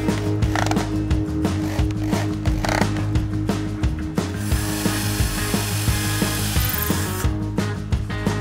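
Cordless drill driving screws through a brass hinge into a wooden coop-door frame, with rapid ratchet-like clicking throughout and a longer run of the drill's hissing motor noise from about four to seven seconds in.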